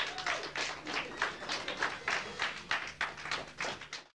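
Hand clapping: a quick, uneven run of sharp claps, about four a second.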